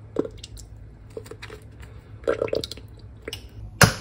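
Liquid cream glugging out of a small carton into a steel food-processor bowl in a few short gurgling pulses. A single sharp knock near the end.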